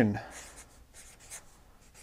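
Marker pen writing on a paper flip-chart pad: a run of short, faint strokes as the letters of a word are drawn.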